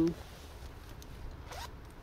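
A zipper being pulled open or closed.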